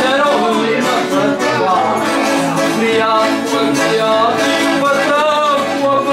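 Live traditional folk music: piano accordions and a strummed guitar playing together, with a man singing over them.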